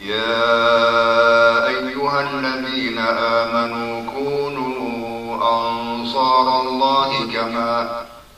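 A man's voice chanting Arabic Quran recitation in long, melodic held notes with winding ornaments: an imam reciting aloud during prayer.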